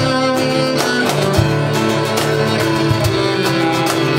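Instrumental acoustic folk music: a bowed cello playing held notes over strummed acoustic guitar.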